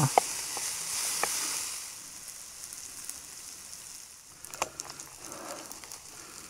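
Diced bacon sizzling in a small ceramic-coated frying pan over a gas canister stove, with a few light clicks from the wooden spatula stirring it. The sizzling is louder at first and drops about two seconds in.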